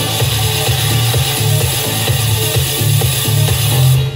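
Electronic dance music with a heavy, pulsing bass line playing loudly from a Bose S1 Pro portable PA speaker turned up to full volume.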